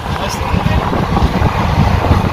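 Passenger train running, heard from inside: a steady low rumble with wind noise on the microphone.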